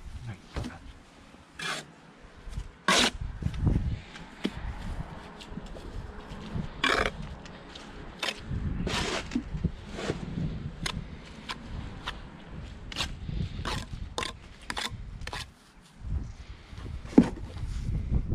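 Steel brick trowel working mortar: scooping it off a spot board and buttering bricks, heard as irregular sharp scrapes and clinks of steel on mortar and brick.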